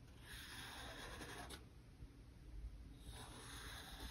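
Marker drawing on a paper plate: two faint strokes, one lasting about a second near the start and another starting about three seconds in.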